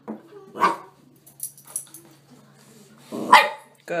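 Chihuahua barking in short alert barks, one about half a second in and another near the end, with a couple of softer yips between: a service dog's trained alert that it has found its person.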